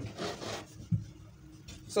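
A plastic curve ruler sliding and rubbing across fabric as it is turned over and repositioned, with a soft knock about a second in.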